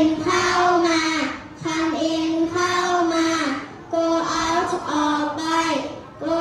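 A class of children reciting aloud together in a drawn-out, sing-song chant, in phrases of about a second with short breaks between them.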